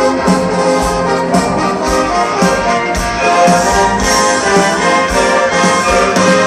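Orchestra and rock band playing a rock medley live, recorded from the crowd, with the brass section carrying the tune over a steady beat.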